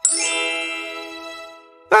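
A cartoon chime sound effect: one bright, bell-like ring that starts at once and fades away over nearly two seconds.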